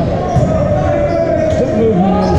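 Volleyball rally in a large gymnasium hall: players' voices and calls echoing over the gym din, with a sharp smack of the ball less than half a second in.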